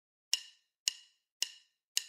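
Four evenly spaced sharp percussive ticks, a little under two a second, the count-in at the start of a background music track.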